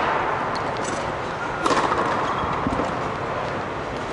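A tennis ball struck hard by a racket once, about a third of the way in, then a softer knock, likely the ball bouncing, about a second later, over steady background noise.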